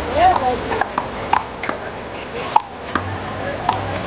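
A small blue rubber handball being struck by hand and rebounding off the concrete wall and court in a one-wall handball rally: about six sharp smacks, irregularly spaced, under background voices.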